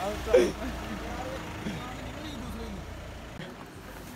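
Low rumble of a motor vehicle nearby, with faint voices in the background; the rumble stops about three and a half seconds in.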